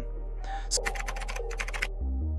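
Computer keyboard typing sound effect: a rapid run of about a dozen keystrokes, starting about half a second in and stopping just before the end, over background music with a steady low bass.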